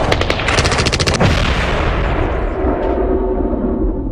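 Battle sound effect: a rapid burst of automatic gunfire lasting about a second, then a long rumbling boom that slowly fades away.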